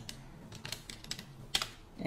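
Typing on a computer keyboard: a string of light key clicks, with one louder keystroke about one and a half seconds in.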